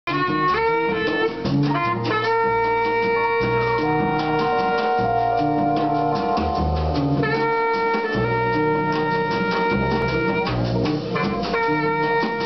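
Live small-group jazz: a saxophone plays long held notes over a walking double bass line, with a drum kit keeping time on cymbals and drums.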